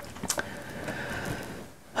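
A single faint click about a third of a second in, over low room noise.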